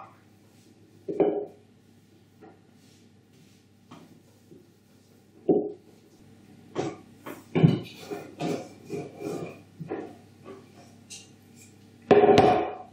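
Rolling pin with plastic end rings rolling out dough on a wooden table, knocking and bumping against the tabletop. There are a couple of single thuds, then a run of quicker, uneven knocks in the second half.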